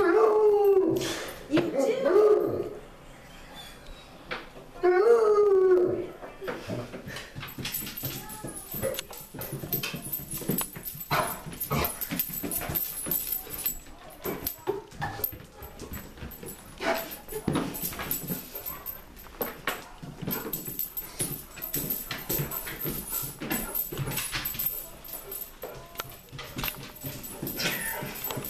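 Basset hound baying: three long, wavering calls in the first six seconds. Then a long run of light clicks and knocks: paws and footfalls on a wooden staircase.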